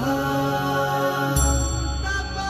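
Closing theme music with a chant-like sung vocal over sustained chords; a deep bass note comes in about one and a half seconds in.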